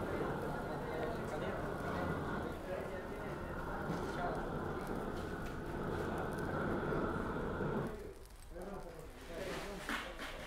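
Roofing torch running steadily, its flame melting the bitumen on the back of a scrap of torch-down roofing membrane. The torch sound drops away about eight seconds in.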